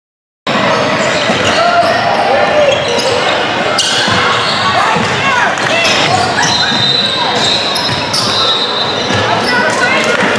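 Basketball game sounds in a large gym: the ball bouncing on the hardwood court amid shouting voices of players and spectators, with the hall's echo. It begins after a moment of silence.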